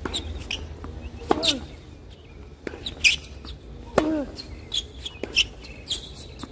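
Tennis rally on a hard court: racket strings striking the ball roughly every one and a half seconds, alternating between louder near hits and fainter hits from across the court. A short pitched sound follows right after each loud near hit.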